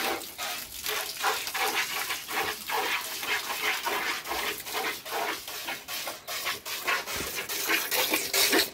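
Hand-milking a cow: streams of milk squirting from the teats into a metal pail that already holds foamy milk, in a steady rhythm of about three squirts a second.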